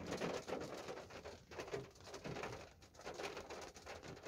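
Rain tapping faintly on a car's windscreen and roof, heard from inside the car as a soft haze of small ticks, with a few low cooing sounds among them.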